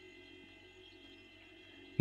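Quiet room tone between spoken phrases: a faint, steady hum with no other events.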